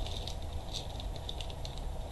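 Clear plastic zip-lock bag crinkling and rustling in the hands, a scatter of light crackles over a steady low hum.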